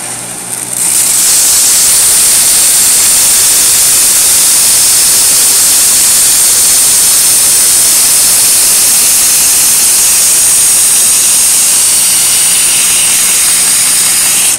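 Homemade 2"x72" belt grinder, driven by an old washing-machine motor, grinding a steel knife blade on a 120-grit belt. A loud, steady hiss of steel on abrasive starts about a second in and holds, over the hum of the motor.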